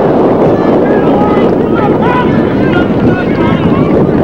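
Wind buffeting the microphone in a steady, loud rumble, with faint distant voices calling out now and then.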